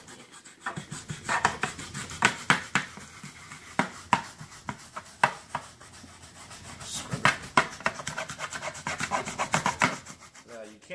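Stiff-bristled brush scrubbing wet cloth upholstery, rapid back-and-forth scratchy strokes in spells, thinning out in the middle and picking up again over the last few seconds.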